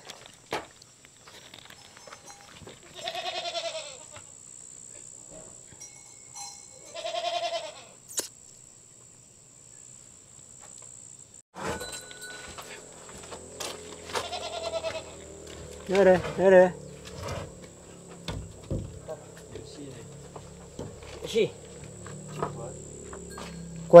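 A goat bleating with a quavering voice: two calls in the first half, then two louder calls about sixteen seconds in. Scattered light knocks sound between the calls.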